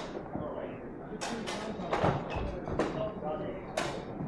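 Longswords striking together repeatedly in a sparring exchange, a series of sharp hits, with footfalls thudding on a wooden floor, one heavy thud about halfway through.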